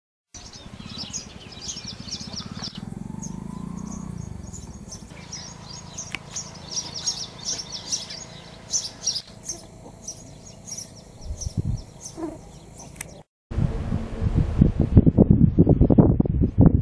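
Many small birds chirping in short, repeated high calls over a low background rumble. Near the end the sound drops out briefly and is followed by loud gusts of wind buffeting the microphone.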